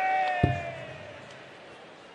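A steel-tip dart hits a bristle dartboard once with a sharp thud, about half a second in. Over it a long, high-pitched call from the crowd tails off, leaving a low crowd hush.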